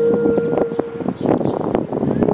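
Background music holding a steady note for about a second, then softer, over wind noise on the microphone.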